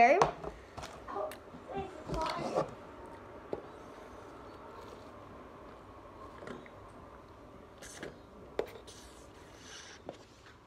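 A few murmured words, then quiet room tone with faint sips through a drinking straw from a paper cup and a few small clicks in the last couple of seconds.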